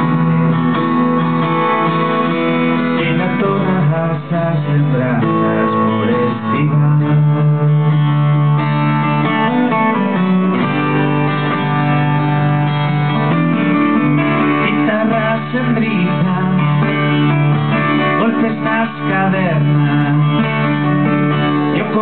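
Live acoustic music: two acoustic guitars, one a steel-string guitar, playing an instrumental passage together without singing, with sustained low notes under the picked and strummed chords.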